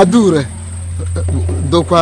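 A person's voice speaking loudly in short bursts, the first falling in pitch, over a steady high-pitched insect trill, crickets, and a low hum.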